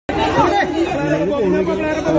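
Several voices talking and calling out over one another, cutting in suddenly out of dead silence at the start.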